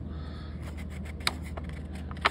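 A folded paper instruction sheet rubbing and rustling as hands handle it, with one sharper tick a little past a second in.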